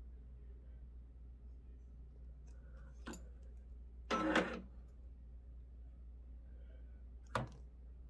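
Quiet workroom with a steady low hum. About four seconds in, a short motor whir as the multi-needle embroidery machine's needle case shifts over to the next needle. Soft clicks come before and after it.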